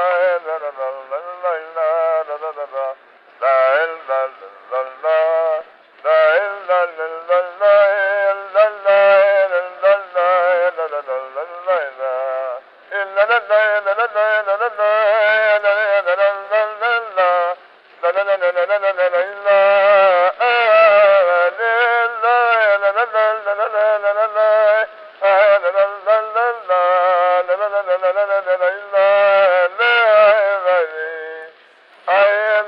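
A recorded klezmer melody playing back: one ornamented melodic line with vibrato and pitch bends, in phrases separated by brief pauses. Its tones are attacked and die gracefully away, and the recording sounds dull, lacking its highs.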